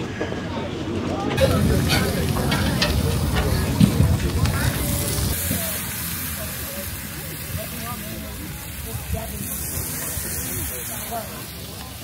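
Burger patties sizzling on a propane flat-top griddle; the hiss sets in about a second and a half in.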